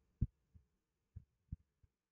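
Mostly quiet, broken by a few short, faint low thumps, the clearest about a quarter second in.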